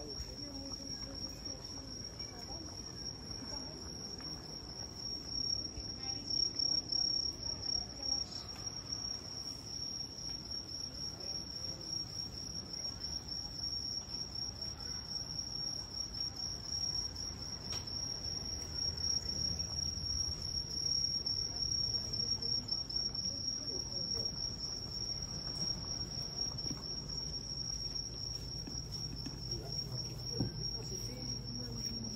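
Crickets chirping in a steady, high, fast trill, over a low background rumble.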